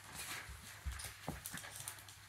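Felt-tip marker scratching back and forth on paper as a drawing is coloured in, with three soft low thumps in the middle.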